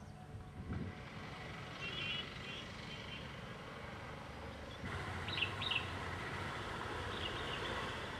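Birds chirping in short bursts: a few quick notes about two seconds in, two sharp chirps in the middle (the loudest sounds) and more near the end. Underneath runs a steady low rumble and hiss of open-air background that grows louder about halfway through.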